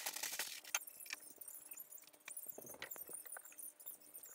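Scattered clicks, clinks and rustling of small household items being handled and set down, over a faint steady hum.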